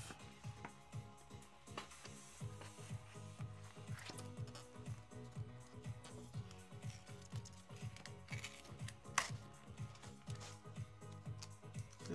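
Soft background music with a steady beat, under a few faint clicks and rustles of fingers peeling a cut piece of vinyl off a cutting mat, the clearest about nine seconds in.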